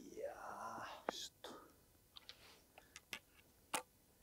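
A man's drawn-out, breathy groan of disappointment after a badly struck golf shot. It is followed by several short, sharp clicks, the loudest near the end, as golf clubs knock together while he handles them.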